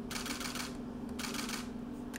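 Still-camera shutters firing in two rapid bursts of clicks, over a steady low hum.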